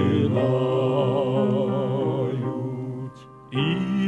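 Male vocal quartet singing a slow phrase in harmony, long held notes with vibrato, with piano accompaniment. The sound breaks off briefly about three seconds in, then the voices come in again on the next phrase.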